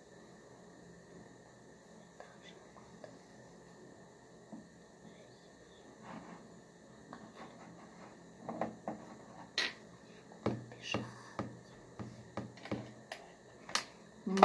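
Chess pieces being picked up and set down on a wooden board. After a quiet stretch come a handful of light, irregular clicks and knocks, starting about eight seconds in and running to the end.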